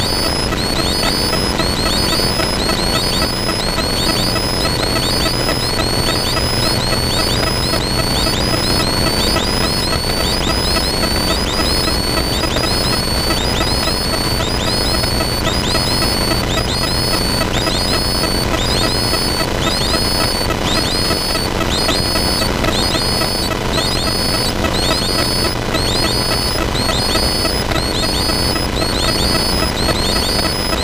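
Zenith CH701 light aircraft's engine and propeller running steadily, heard from inside the cockpit through the final approach, touchdown and rollout. A faint high chirp repeats about one and a half times a second over the engine noise.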